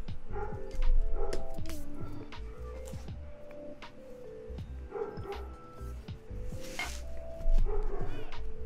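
Background music with scattered clicks and knocks as a red aluminium keyboard case and its plate-and-PCB assembly are handled on a desk, with two louder bursts about a second in and near the end.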